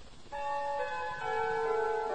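Music of bell-like chimes: several ringing notes come in one after another about a third of a second in and hold on, overlapping.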